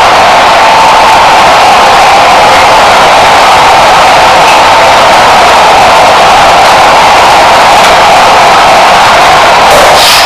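Audio boosted far past clipping, heard as one continuous wall of harsh distorted noise with a faint held pitch under it. It does not break or change until the end.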